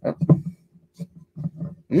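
A string of short, low grunting vocal noises from a man straining at the cork of a bottle of aged Belgian strong dark ale.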